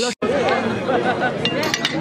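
Chatter of many dinner guests talking over one another, with a few sharp clinks of tableware near the end. The sound drops out briefly just after the start.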